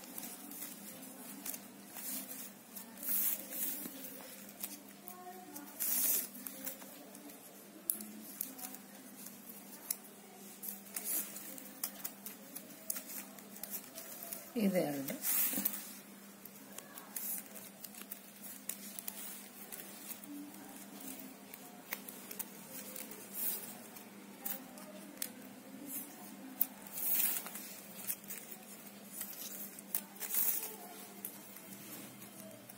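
Flat plastic basket-wire strips rustling, scraping and clicking against each other as they are pulled and tucked through woven knots by hand, in many short scattered scrapes.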